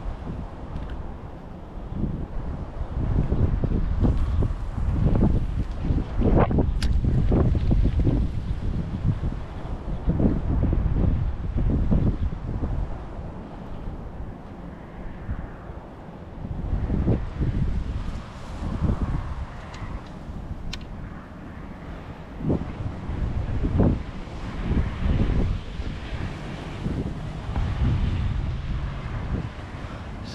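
Gusty wind buffeting the microphone: a heavy rumble that swells and eases in waves every few seconds.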